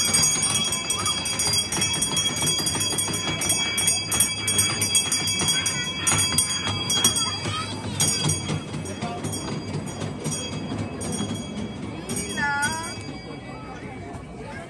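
Jingle bells ringing and shaking steadily over crowd chatter, fading near the end.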